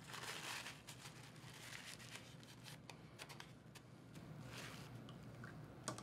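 Faint rustling and crinkling of a paper towel rubbed over a metal dotting tool to wipe off tacky Micro Liquitape, with a few small clicks.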